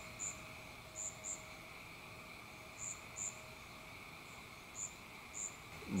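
Faint outdoor insect chorus: a steady high trill, with short, very high chirps, often in pairs, every second or two.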